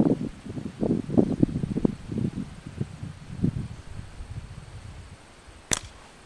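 A single sharp crack near the end as a slingshot's lead ball strikes the tin can target, after a few seconds of low irregular rumbling.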